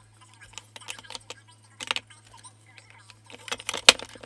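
Plastic makeup compacts clicking and clacking against each other and against a clear acrylic organizer as they are stacked into it. The taps come in small clusters, with the loudest clack near the end, over a low steady hum.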